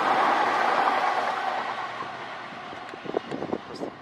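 Southeastern Class 395 electric multiple unit passing and running away along the line, its noise loudest at first and fading steadily as it recedes, with a few faint clicks near the end.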